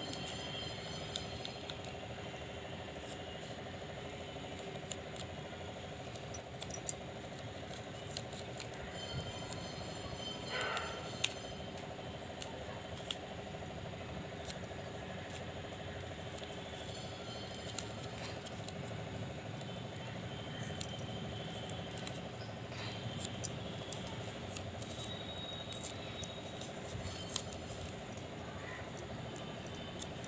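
Quiet handling sounds of crafting: scattered light clicks and rustles as small pieces of double-sided tape are stuck onto mango leaves threaded on a string, over a steady background hum.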